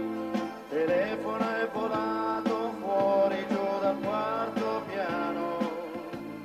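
A live band plays a pop song with a steady drum beat under a melody line that slides up and down in pitch.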